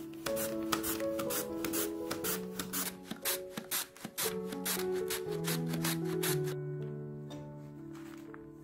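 A radish is rubbed quickly back and forth over a julienne slicer's blade, a rasping stroke about four or five times a second, which stops about six and a half seconds in. Gentle background music plays throughout.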